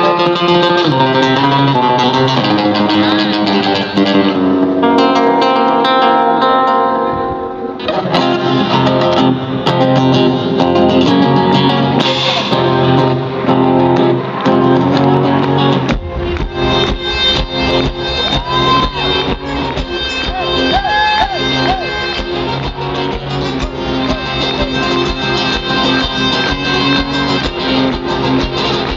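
Live amplified acoustic guitar playing, with a steady beat joining about halfway through.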